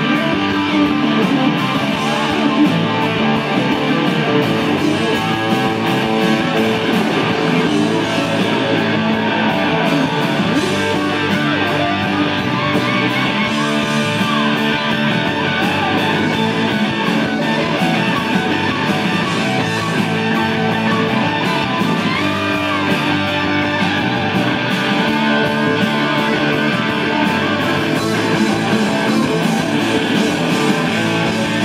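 Live rock band playing: two electric guitars over bass and drums, with a lead guitar bending notes a few times in the middle of the passage.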